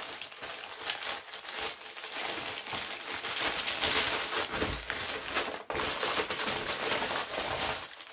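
Plastic bubble mailer being opened and handled, a continuous crackly crinkling and rustling of the plastic with a brief pause about two-thirds of the way through.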